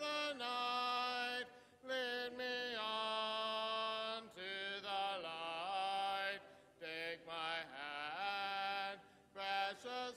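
Hymn sung a cappella, with no instruments, led by a man's voice: slow, held notes in phrases of a second or two with short breaks for breath between them.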